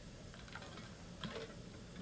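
A few faint, light clicks of a computer keyboard over quiet room tone.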